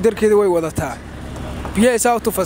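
Speech of a street interview, with a steady low hum of street traffic behind it.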